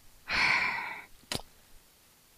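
A woman's audible sigh: one breathy exhale lasting under a second, followed by a single short click.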